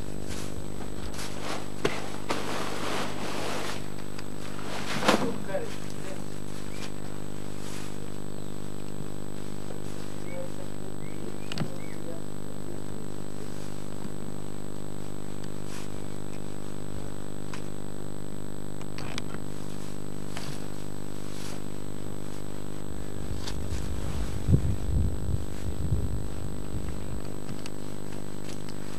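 An engine running steadily at constant speed, a continuous even drone, with a few knocks and thumps over it; the loudest knock comes about five seconds in, and there are low rumbling thumps near the end.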